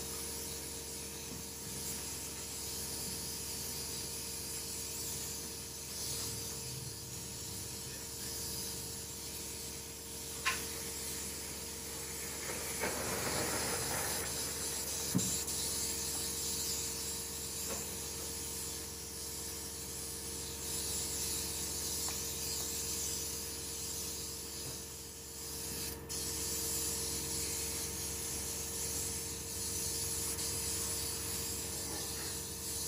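Steady hiss with a faint steady hum underneath, and two brief clicks a few seconds apart midway.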